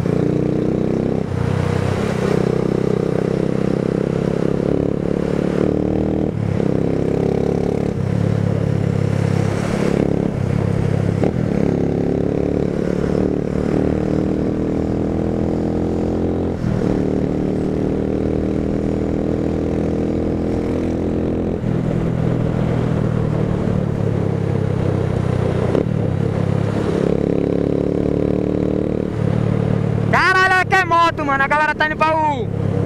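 Motorcycle engine running under way, its note climbing as it accelerates and dropping back several times as the bike changes gear or eases off.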